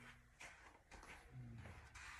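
Near silence in a room, with a few faint soft knocks and rustles from someone moving about.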